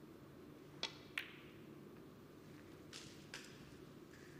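Snooker shot: the cue tip clicks on the cue ball, and about a third of a second later the cue ball sharply strikes an object ball. Two softer clicks of balls colliding follow near the end.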